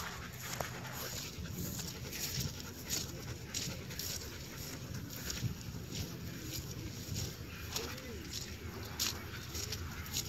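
Irregular soft footfalls and rustling in grass over a low outdoor background, with one faint rising-and-falling call, voice- or whine-like, about eight seconds in.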